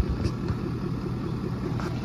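Ford Super Duty's Power Stroke diesel idling steadily. A single sharp thump right at the start, as the camera is handled.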